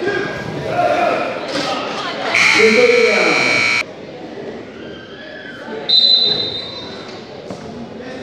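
Spectators shouting as a wrestler drives in for a takedown. A gym buzzer then blares for about a second and a half and cuts off suddenly. A brief high-pitched tone follows near the end.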